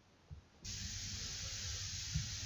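A steady hiss that starts abruptly about two-thirds of a second in, with a low rumble beneath it, after a faint low thump.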